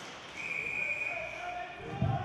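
Ice hockey game sound in an arena: voices of spectators and players, with a long steady high tone held for about a second and a half and a low thud right at the end.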